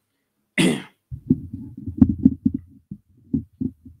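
A single cough close to the microphone about half a second in, followed by a run of irregular low thumps and bumps from the microphone being handled and shifted on its arm.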